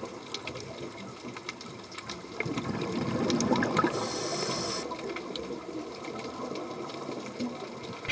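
Underwater ambient sound at a reef: a steady wash of water noise with scattered faint clicks, swelling slightly about halfway through.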